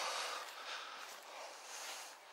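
Soft breathing and faint rustling close to the microphone, a breathy hiss that swells and fades a few times.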